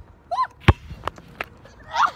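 A girl's short high exclamation, then a basketball bouncing on asphalt: one loud smack followed by two lighter bounces, with another brief vocal sound at the end.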